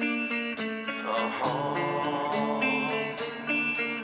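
Horror punk band music led by guitars, with a steady cymbal beat.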